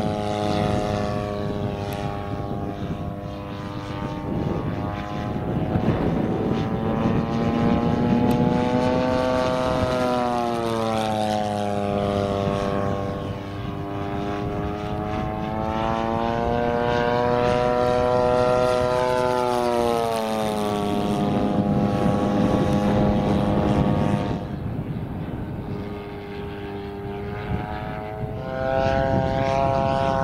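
Zenoah 80cc two-stroke twin petrol engine of a 1/5 scale radio-controlled Douglas Dauntless model plane in flight. Its steady propeller-driven note rises and falls in pitch and loudness several times as it flies.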